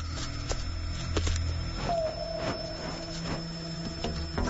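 Soft background music: a low steady drone with a long held note that slides in from slightly above about two seconds in. A few faint clicks come in the first second and a half.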